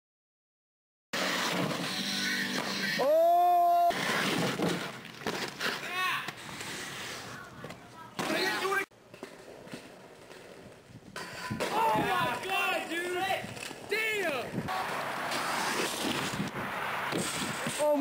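After about a second of silence, indistinct shouting voices over a steady rushing noise, including one long held yell a few seconds in. This is the raw audio of home-video footage of inline skating.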